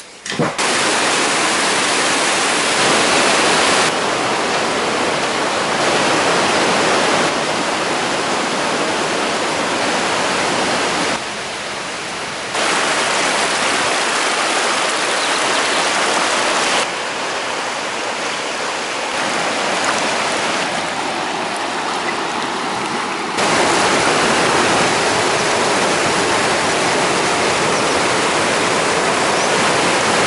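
Mountain river rushing over boulders and shallows. The rush of water is steady within each stretch but jumps abruptly louder or quieter several times.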